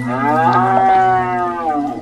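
One long, drawn-out animal call, rising and then falling in pitch over about a second and a half, over a steady low hum.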